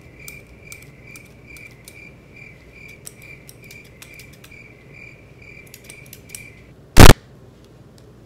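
Crickets chirping in a steady pulse about twice a second, with the small clicks of scissors snipping through a latex bald cap. The chirping stops suddenly, and a very loud, short crack follows at about seven seconds.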